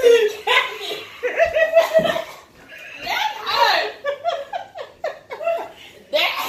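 Women laughing in short bursts, mixed with bits of talk, as they react to the burn of a very hot sauce.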